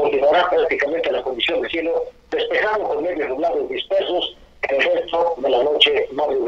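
Speech only: a man talking continuously in Spanish, a weather forecast given over a telephone line.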